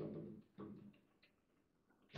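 Two light knocks of a table football ball against the table's plastic figures and rods, about half a second apart, each dying away quickly.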